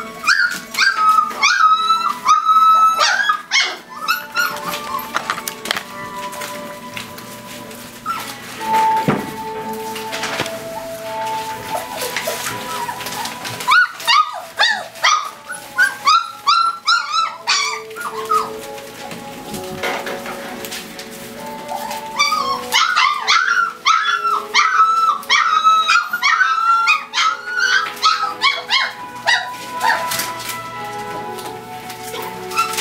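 Weimaraner puppies crying with high-pitched whines and yelps in three bouts, near the start, about halfway through and again near the end, over steady background music.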